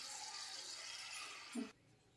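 Faint, even sizzle of cooking oil heating in a steel pan. It cuts off into dead silence a little before the end, just after a brief short sound.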